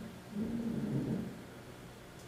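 A low, indistinct person's voice murmuring briefly, twice, with no clear words, against quiet room tone.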